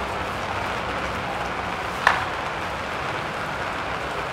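Steady hiss of outdoor background noise picked up by the camera microphone, with one short sharp click about two seconds in.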